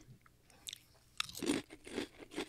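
Small rice crackers being bitten and crunched in the mouth. A short series of crisp crunches starts about a second in.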